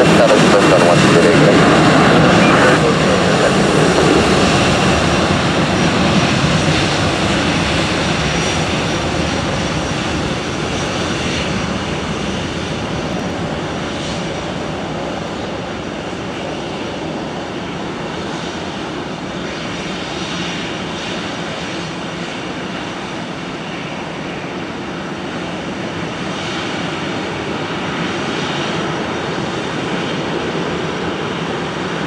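Twin jet engines of an Airbus A320-family airliner at takeoff thrust on its takeoff roll, loud as it passes and then fading steadily as it moves away down the runway.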